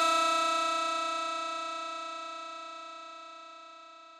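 A single held synthesizer note closing a Brazilian funk track, ringing on alone after the beat stops and fading steadily away.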